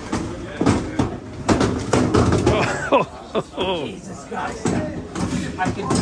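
Voices talking in a large room, broken by several sharp knocks and thuds from hard-shell plastic bike boxes being pushed onto an airport oversized-baggage belt.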